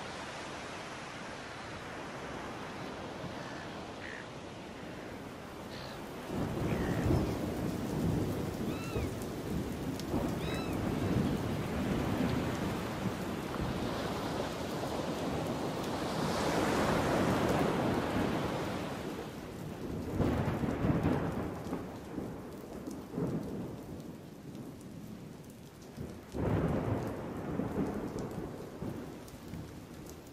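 Ocean surf breaking on a beach: a steady wash of noise that swells into louder, deep rumbling surges every several seconds.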